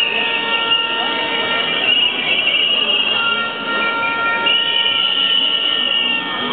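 Crowd noise with many long, shrill whistle blasts overlapping and changing pitch.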